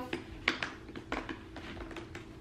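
A handful of light taps and clicks from a plastic puppy pee pad holder and its removable grate being handled.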